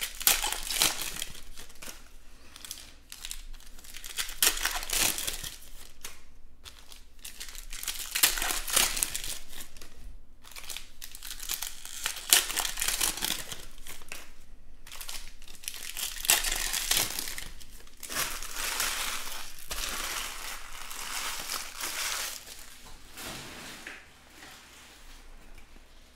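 Foil wrappers of trading-card packs being torn open and crinkled by hand, in repeated bouts of crackling with short pauses between them, dying down near the end.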